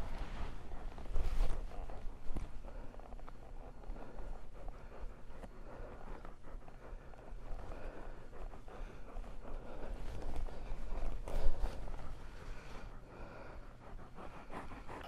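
Saddle leather, rope and hooves shuffling in sand as a rider dismounts a young colt and stands beside him, with irregular rustles and small knocks and two louder short bursts, about a second in and near eleven seconds in.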